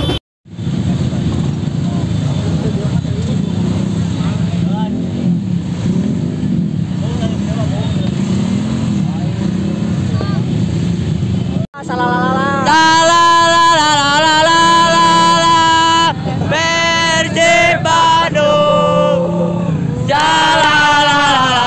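Motorcycle convoy street noise: many engines running and revving under crowd voices. After a sudden cut about twelve seconds in, loud group chanting takes over, with long held notes.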